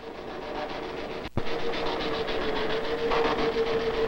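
IBM 1440 data processing machinery in operation, posting bank transactions to a disk pack. It makes a steady hum with a held tone and a fast, even clatter. A brief break and a single knock come about a third of the way in.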